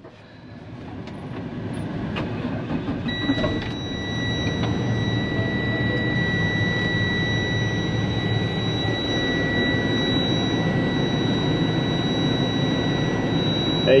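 Freightliner M2 diesel engine running, heard from inside the cab, its sound building over the first few seconds and then holding steady. A steady high-pitched dash warning buzzer comes back on about three seconds in and keeps sounding.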